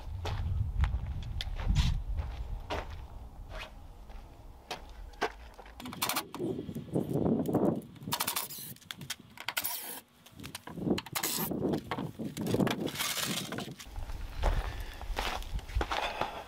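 Irregular knocks, scrapes and footsteps on gravel as a plywood panel is handled and pulled away from a wooden frame. A low wind rumble on the microphone comes in the first few seconds and again near the end.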